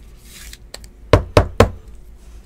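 Trading cards handled with a short swish, then knocked against the tabletop three times in quick succession, about a quarter second apart.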